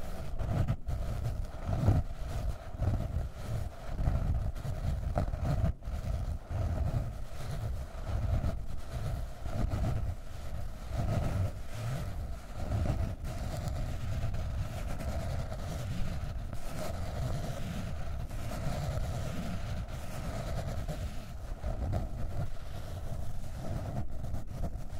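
Long fingernails scratching on the cover of a hardcover notebook, a continuous close-up scratching with a low rumble beneath it.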